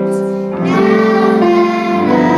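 A group of young girls singing together, holding sustained notes, with a shift to new notes less than a second in.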